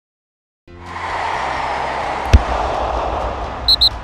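Produced intro sound effects: a rush of noise with a low rumble rises in under a second in, one sharp thump hits partway through, and two quick high beeps follow near the end.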